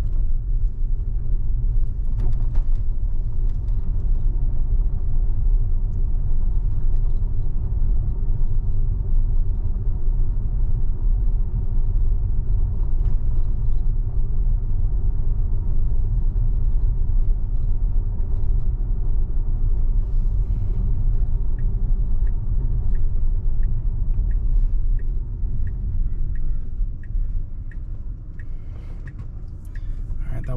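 Road and tyre rumble inside the cabin of a Tesla electric car driving on a residential street: a steady low rumble with no engine note, easing off in the last few seconds as the car slows to a stop. Faint turn-signal ticks, about two a second, come in for several seconds a little past the middle.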